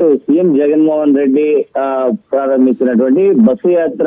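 A man speaking Telugu in a steady news-report narration, with a couple of brief pauses.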